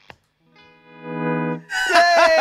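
Distorted electric guitar through an amp. After a faint click and a short pause, a sustained chord swells up and stops. Near the end a louder note rings out and begins to slide down in pitch.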